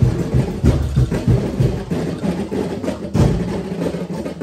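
A festival street-dance drum and percussion ensemble playing a fast, loud, driving beat of bass drums and wooden strikes, with a strong accent a little after three seconds in.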